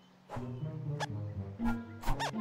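Orchestral film score with short, squeaky cartoon-animal vocalisations from the animated squirrels, including a quick rising squeak about a second in. It starts after a brief near-quiet moment.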